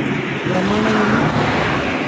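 A motor vehicle's engine running nearby, a steady drone.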